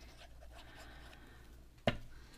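Faint handling sounds as Beacon 3-in-1 craft glue is squeezed from its plastic bottle onto a small paper piece, then one sharp click near the end as the glue bottle is handled.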